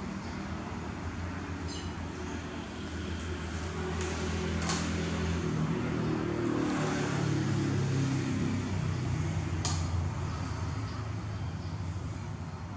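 A low, steady motor hum that grows louder through the middle and eases off near the end, with a few sharp clicks.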